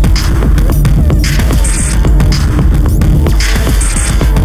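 Electronic music played live on a Eurorack modular synthesizer: a loud, steady low bass drone under short falling blips, with a burst of hiss about every two seconds.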